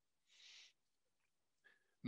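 Near silence: a pause in speech, with one faint short hiss about half a second in.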